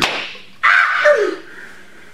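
Laughter opening with a sharp slap, then a breathy burst of laughing with a short falling pitch that fades away.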